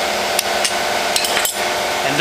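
Wrench working the mounting bolts of a Bosch VE diesel injection pump as they are loosened: a few sharp, irregular metal clinks over a steady background hum.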